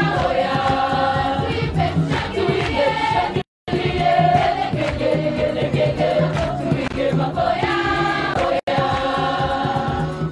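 Choir of girls' voices singing a gospel song together, held notes moving up and down. The sound cuts out completely for a moment about a third of the way in, and again very briefly near the end.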